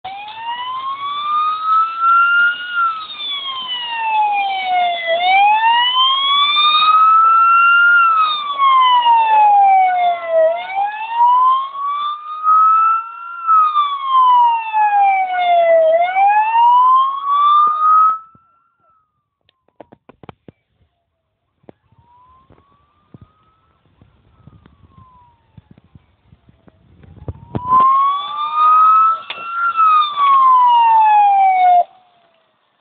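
Fire engine siren wailing, slowly rising and falling about every five seconds. It cuts off about eighteen seconds in, leaving a quiet stretch with a few faint clicks, and starts up again near the end.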